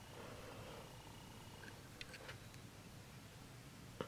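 Near silence: a faint steady hum, with a few soft clicks about two seconds in from round-nose pliers working a jewelry wire loop.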